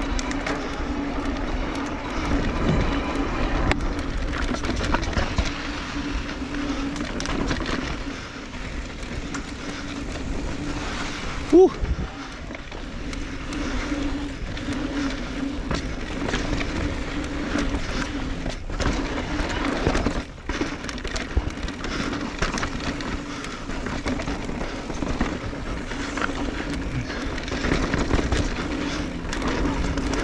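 Electric mountain bike ridden down a dirt trail: tyre and rattling noise with wind on the microphone and a steady hum throughout. Its badly noisy disc brakes give one short, loud rising squeal about twelve seconds in.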